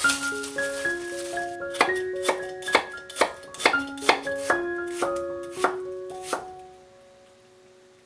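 Kitchen knife chopping an onion on a wooden cutting board, sharp cuts about two a second, over background keyboard music that fades out near the end.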